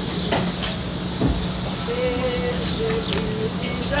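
Steady hiss over a low hum, with faint wavering voices about halfway through.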